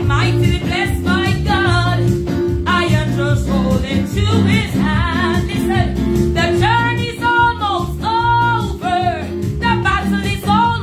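A woman singing a Pentecostal gospel song in full voice, holding several long notes in the second half. She accompanies herself on an electronic keyboard playing steady chords and a bass line.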